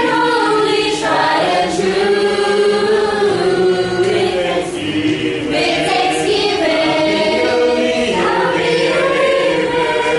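A mixed choir of young men and women singing together, holding long sustained notes that shift in pitch from phrase to phrase.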